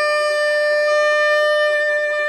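A wind instrument holding one long, steady note, after a quick rising run of notes.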